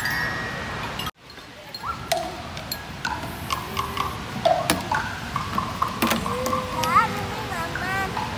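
Children's voices and high calls, with scattered sharp clicks and knocks of plastic toys being handled. The sound cuts out for a moment about a second in.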